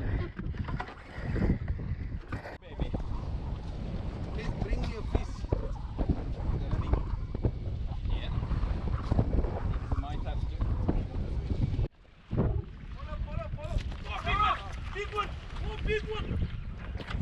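Wind buffeting a camera microphone on an open boat at sea, an uneven low rumble with scattered knocks and handling bumps. The sound drops out briefly about twelve seconds in.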